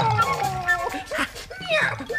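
Several short animal cries that glide up and down in pitch, over background music.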